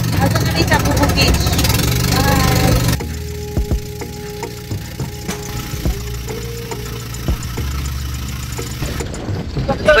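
Motor of a bangka outrigger boat running steadily under way, with faint voices over it. The sound drops suddenly in level about three seconds in, and the steady drone carries on more quietly.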